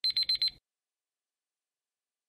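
Countdown timer alarm going off as it reaches zero: four quick high-pitched electronic beeps within about half a second, signalling that time is up.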